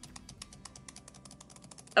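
A computer mouse button clicked rapidly and repeatedly, an even train of sharp clicks at roughly ten a second.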